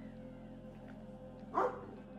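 A dog barks once, a short loud bark about a second and a half in, over a faint low steady hum.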